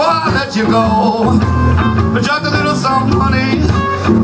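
Live blues band playing loudly: electric guitars, electric bass, Hammond B3 organ and drums, with bending guitar lines over a steady rhythm section.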